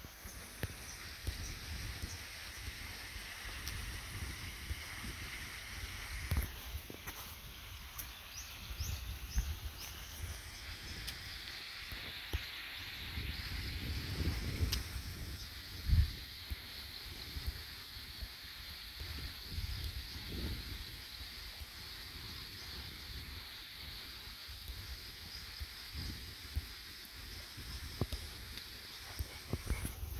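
Outdoor rural ambience: wind rumbling on the microphone, with a faint steady high-pitched chorus in the background and one short thump about halfway through.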